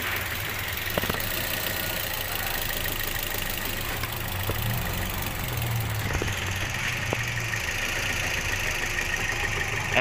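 A car engine idling with a steady low hum, with a few faint clicks.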